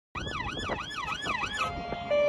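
Emergency vehicle siren sounding a fast rising-and-falling yelp, about three wails a second, that cuts off suddenly near the end.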